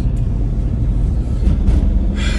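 Steady low rumble of a car being driven, heard from inside the cabin: engine and road noise.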